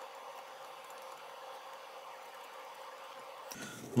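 Steady, faint hiss of background noise with no distinct handling sounds.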